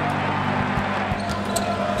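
Game sound from a basketball court: a basketball bouncing on the hardwood a few times, irregularly, over a steady low hum.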